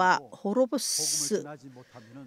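A man's voice preaching, with a long hissing sibilant about three-quarters of a second in.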